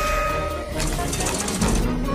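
Film soundtrack music with electronic effects: a steady high tone in the first part, then a fast high ticking through the middle.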